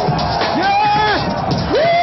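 A live hip-hop performance: music with a voice holding notes that slide up into each note and down out of it, over crowd noise, on a dull-sounding old recording.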